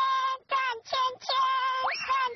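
A very high, synthetic-sounding cartoon voice singing short wordless notes, about two a second, with a sharp upward pitch slide near the end.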